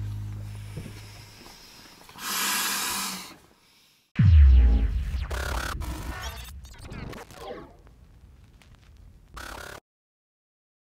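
End-card music fading out, then a swoosh, then an animated logo sting: a sudden deep boom about four seconds in that drops in pitch, followed by sweeping whooshes and glitchy effects that stop just before the end.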